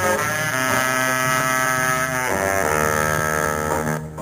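A live band's horn section of saxophones, trumpet and trombone playing long sustained chords over bass and drums. The chord changes about half a second in and again a little after two seconds.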